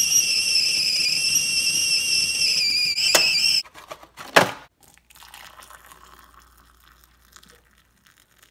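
Glass stovetop kettle whistling at the boil, a steady high whistle that cuts off suddenly about three and a half seconds in as it comes off the heat. A couple of sharp knocks follow, then faint hot water pouring into a mug.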